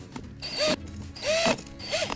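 Cordless drill driving screws into a receptacle cover plate in short trigger pulses. Its motor whine rises and falls with each burst, two short runs and a third starting near the end.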